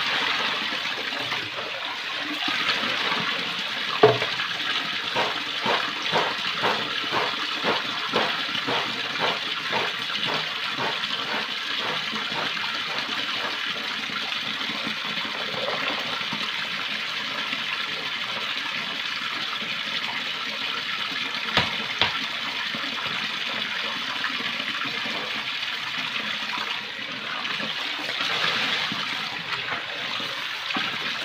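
Water from a wall tap pouring steadily into a plastic basin while plastic basins are rinsed and sloshed under it. From about four seconds in there is a quick run of rhythmic splashing, about three strokes a second, lasting several seconds. A couple of sharp knocks of plastic come a little past the middle.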